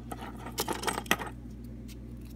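A few light clicks and clatters of small plastic toy cars and pieces being handled and set down, bunched from about half a second to a second in.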